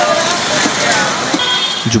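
Street ambience of road traffic and a crowd: a steady hiss of vehicles with indistinct voices underneath.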